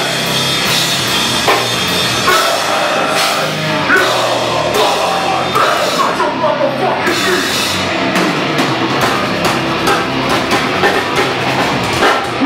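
Live heavy rock band playing loud, with a pounding drum kit, guitars and a vocalist on the microphone.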